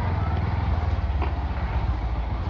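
Bajaj Pulsar NS125's single-cylinder engine running steadily as the motorcycle is ridden, a low, fast, even pulsing note.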